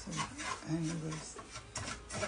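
Wooden spatula stirring and scraping semolina toasting in butter in a frying pan, a dry rasping rub with each stroke.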